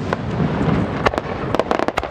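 Aerial fireworks going off: a constant crackle of sharp pops over a low rumble, with a quick run of reports in the second half.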